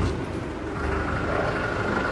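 A vehicle engine idling, a steady low rumble with a faint steady whine above it.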